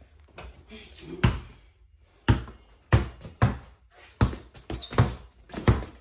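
Basketball dribbled on a bare concrete floor: sharp bounces at an uneven pace, about eight of them, the first a little over a second in.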